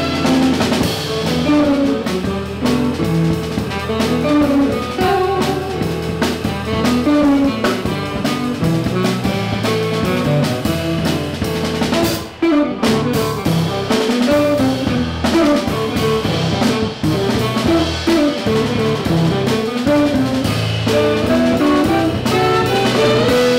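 Live jazz band playing: saxophone over hollow-body electric guitar, upright double bass, keyboard and drum kit, with a brief drop-out a little past halfway.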